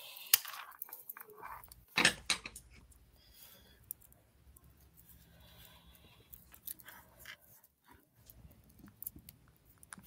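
Scattered small clicks and rustles of fingers handling a strung beaded bracelet and its metal button closure, with the sharpest clicks about two seconds in.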